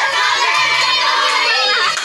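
A group of women and girls shouting and cheering together, many voices overlapping at once.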